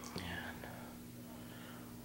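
Quiet room tone with a low steady hum; a soft click right at the start, then a brief faint breathy, whisper-like sound.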